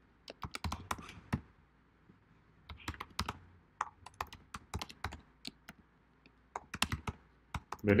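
Typing on a computer keyboard: irregular bursts of keystrokes separated by short pauses, as text is entered into form fields.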